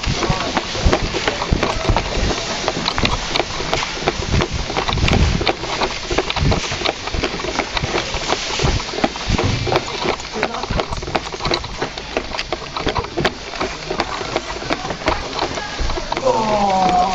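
Steady, dense clatter of clicks and knocks: airsoft guns firing and BBs hitting surfaces, mixed with the player's footsteps and the rattle of his gear as he moves.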